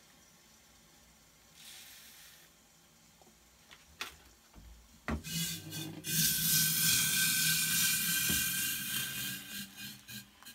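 Just-boiled water poured from a stainless stovetop kettle into a ceramic mug, after a sharp click about four seconds in and the kettle being lifted off the gas burner. The pour is the loudest part and lasts about three to four seconds, ending near the end.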